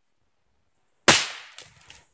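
A single .22 LR rifle shot about a second in, a sharp crack that fades over about half a second as the bullet tears open an aerosol can, followed by a few faint clicks.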